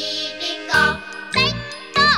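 Children's choir singing a bouncy Cantonese children's song with a band backing and bell-like chimes. A sung phrase leads into a shout-like falling note at the very end.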